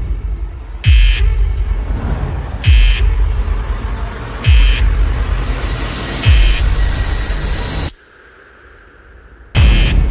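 Trailer score: four deep, falling bass hits about two seconds apart, each paired with a short high buzzing beep like an alarm. Near the end the sound cuts out suddenly for about a second and a half, then loud hits come back in.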